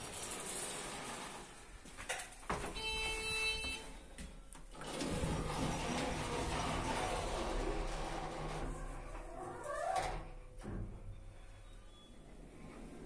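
KLEEMANN passenger lift: a short electronic chime about three seconds in, then the stainless-steel automatic doors sliding with a steady rushing run that ends in a brief rising whine about ten seconds in.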